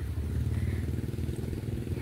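A small engine running, a low steady rumble with a fast even pulse.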